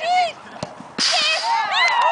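Players shouting and whooping to celebrate a goal: a short cry at the start, then from about a second in several voices yelling together with overlapping rising-and-falling cries.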